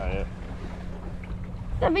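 Wind rumbling on the microphone over a steady low hum, with a short voice right at the start and speech coming back near the end.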